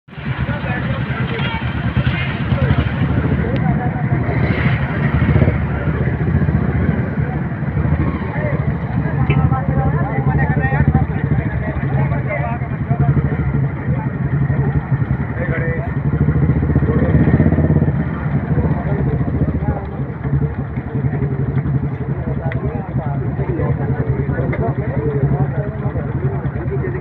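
Vehicle engines running steadily, with men's voices shouting over them.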